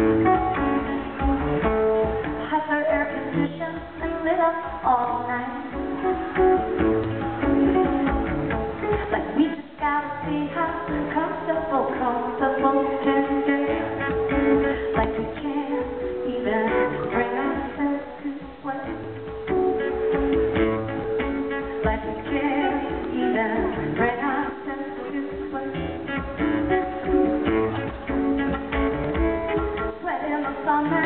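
Live solo performance on a steel-string acoustic guitar: a continuous, busy picked-and-strummed accompaniment, amplified through the hall's sound system, with a woman's singing voice coming and going over it.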